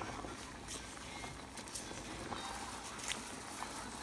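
Pot of water at a rolling boil with spaghetti being pushed in by a wooden spoon: a steady bubbling hiss with a few light clicks.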